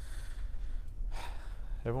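A man drawing two quick breaths, audible hisses about a second apart, over a steady low room hum; speech begins near the end.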